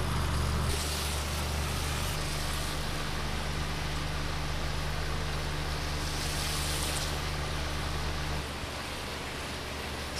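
Water spraying from a hose watering wand's shower nozzle onto trays of microgreens: a steady hiss of falling water. Under it runs a low mechanical hum that drops off in steps, the last near the end.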